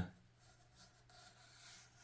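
Faint scratching of a wooden toothpick point dragged along foam board, scoring a groove.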